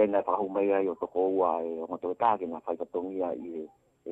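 Speech only: a narrator reading a news report in Tongan, talking steadily without a pause.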